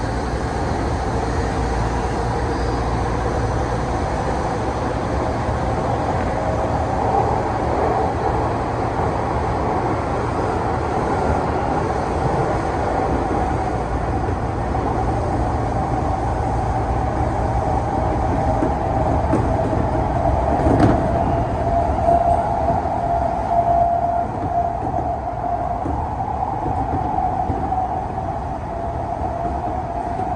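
Odakyu 8000 series electric train running through a tunnel, heard from inside the front cab: a steady rumble of wheels on rail with a sustained whine, which grows louder for a few seconds past the middle. A single sharp click sounds about two-thirds of the way through.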